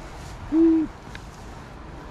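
A single short, low hoot-like call about half a second in: one steady note lasting about a third of a second, over faint outdoor background noise.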